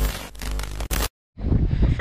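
Editing transition sound effect: about a second of static-like, crackling noise that cuts off abruptly. After a brief silence, wind buffets the microphone outdoors.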